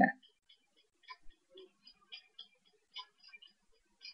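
Faint, irregular light clicks, about half a dozen spread over a few seconds, from a pen-tablet stylus tapping and moving on the tablet.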